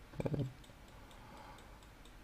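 A pause in a man's talk: a brief murmur of his voice about a quarter second in, then near silence with faint, regular ticking about three times a second.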